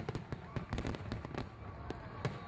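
Fireworks crackling: a rapid scatter of sharp pops and crackles over a low rumble.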